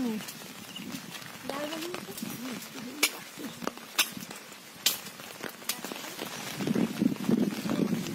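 Shallow muddy water splashing and sloshing as a fine-mesh fishing net is worked by hand in it. The splashing grows louder near the end, with a few sharp clicks in the middle.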